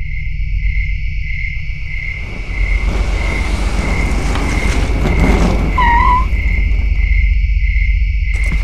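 Produced sound effects for a title sequence: a steady deep rumble under a high chirp that pulses about twice a second. A rushing noise swells up through the middle and dies away, with a short warbling call near its peak.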